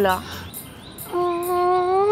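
A woman's voice holding one steady hummed note for about a second, starting about halfway in.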